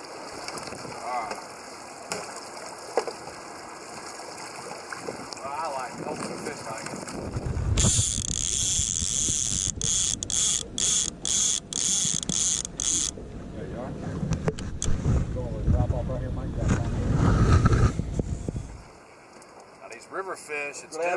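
Wind buffeting a camera microphone, a loud low rumble with hiss that comes in suddenly about seven seconds in and stops shortly before the end, briefly cutting out several times along the way; faint talk underneath.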